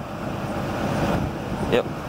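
Diesel fuel pouring from a pump nozzle into a nearly full 100-gallon tank: a steady rushing flow that grows a little louder over the first second.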